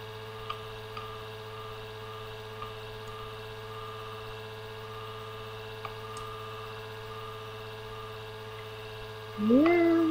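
Computer fan humming steadily, a low hum with a few fixed higher tones over it and a few faint clicks. Near the end a voice comes in with gliding, held notes.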